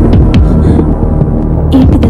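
Low, loud drone of a suspense film soundtrack.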